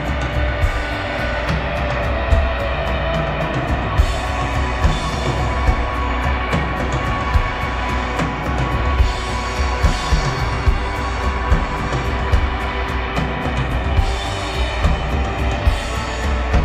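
Live rock band playing an instrumental passage: electric guitars and keyboards over a drum kit keeping a steady beat.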